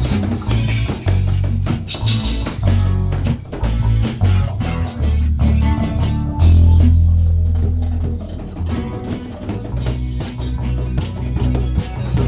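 Instrumental break of a small band with no vocals: electric guitar and electric bass over bongos. The bass holds one long low note about six and a half seconds in.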